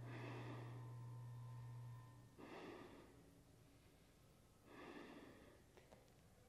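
A man breathing slowly and deeply while holding a full backbend (wheel pose): three faint breaths about two and a half seconds apart. A steady low hum runs under the first breath and cuts off about two seconds in.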